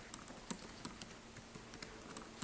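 Faint typing on a computer keyboard: a quick, irregular run of key clicks as a password is entered.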